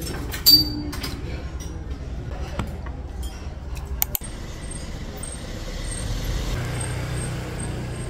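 Restaurant table sounds: a sharp clink of tableware about half a second in, over low background chatter. After a cut about four seconds in, street ambience with a steady low rumble of vehicle traffic that grows stronger near the end.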